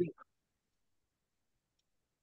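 The last syllable of a man's spoken word, then near silence broken by a faint click or two near the end: computer keyboard keys being typed.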